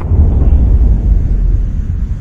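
A loud, deep rumble that starts suddenly and dies away near the end.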